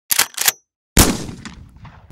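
Gunshot sound effect: two quick sharp clacks, then about half a second of silence, then a single loud shot whose echo fades out over about a second.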